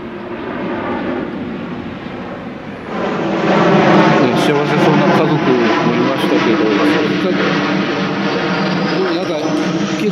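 Airplane flying low overhead: its engine noise swells sharply about three seconds in and stays loud, the pitch sinking slowly as it passes, with a faint rising whine near the end.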